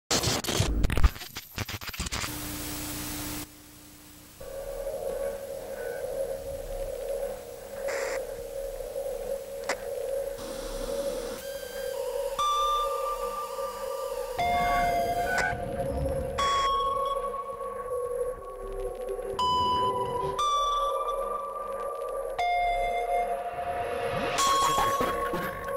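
Electronic music intro. Bursts of static and glitchy noise come first. From about four seconds in, a steady drone sets in, with clean electronic beeps and tones laid over it that change pitch every second or two.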